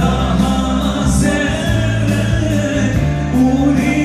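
A slow song playing, with a singing voice over long held bass notes.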